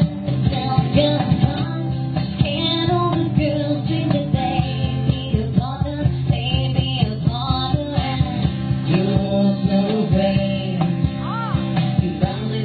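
Live acoustic guitar strummed in a steady rhythm, with singing over it, amplified through a PA.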